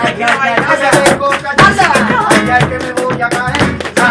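Live flamenco-style Christmas carol (villancico) music: guitar and singing voices over a quick, sharp rhythmic beat.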